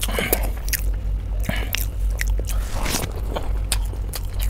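Close-miked eating sounds: a man chewing a mouthful of chicken, with irregular short wet clicks and smacks, over a steady low hum.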